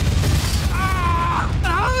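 Deep explosion rumble from a movie trailer's soundtrack, with music under it; a voice comes in a little after the middle.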